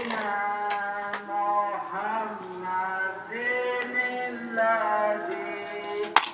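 A voice singing a slow melody, with long held notes that step up and down in pitch.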